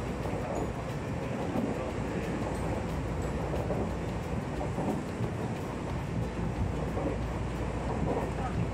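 Steady running noise of a Tobu Tojo Line commuter train at speed, heard from inside the carriage: an even low rumble of wheels on rail.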